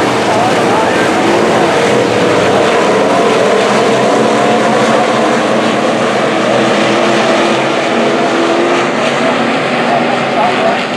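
A pack of USRA stock cars racing on a dirt oval, their V8 engines running hard together in a steady, loud drone. Several engine pitches waver up and down as the cars go through the turns and down the straight.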